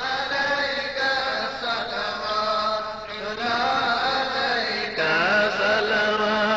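Islamic devotional chanting: voices reciting in long, melodic, drawn-out phrases with no pauses and no instruments.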